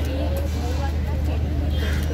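Overlapping voices calling out and chatting, over a steady low engine hum.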